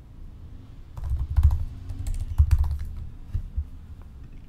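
Typing on a computer keyboard: a short run of keystrokes starting about a second in.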